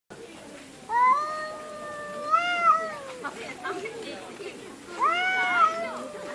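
Cats yowling (caterwauling) in a standoff before a fight: two long, drawn-out, wavering yowls, the first rising slightly and lasting over two seconds, the second starting near the end.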